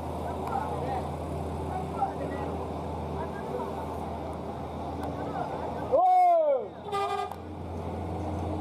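Vehicle engines running steadily as cars and a light truck crawl through a hairpin bend, with faint voices behind. About six seconds in comes a loud short cry that rises then falls in pitch, then a brief steady horn-like toot.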